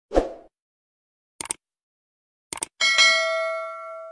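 Sound effects of a subscribe-button animation: a short thump, a single click, then two quick clicks, followed by a bright bell ding near the end that rings on and slowly fades.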